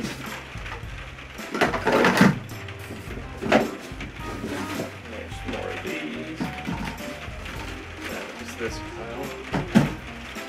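Hollow plastic hydroponic pipes knocking and clattering against each other and the cardboard box as they are pulled out and set down. The loudest clatter comes about two seconds in, with more near four seconds and just before the end. Background music with a steady bass line plays underneath.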